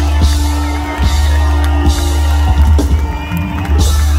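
Reggae band playing live through a festival PA: a deep, steady bass line and regular drum hits, with some crowd whoops over the music.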